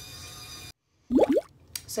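Battery-powered facial cleansing spin brush running against the skin with a steady faint hum, cut off abruptly by an edit less than a second in. A short loud sound with a rising pitch follows about a second in.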